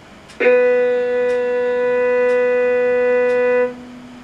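A violin bowing one long, steady low B with the second finger on the G string. The note starts about half a second in, holds for about three seconds, then stops. It is heard through a computer's speakers.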